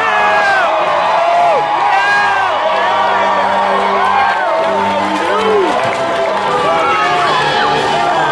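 Arena audience cheering and shouting, many voices overlapping without a break.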